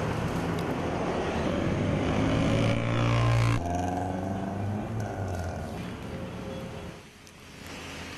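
City street traffic with motorcycle and scooter engines passing close by, one engine's pitch rising as it approaches. About three and a half seconds in it cuts off abruptly to quieter, steadier traffic noise.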